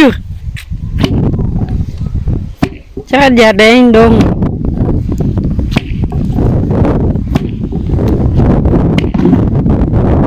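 A long wooden pestle pounding into a tall wooden mortar, struck down again and again to pound grain, each stroke a sharp knock. A voice calls out briefly about three seconds in.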